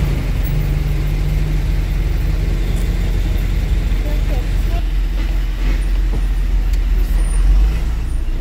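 Diesel truck engine running steadily, heard from inside the cab as a continuous low rumble.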